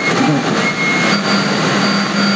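Loud, steady rushing noise with a low hum and thin high tones beneath it, standing in for the music.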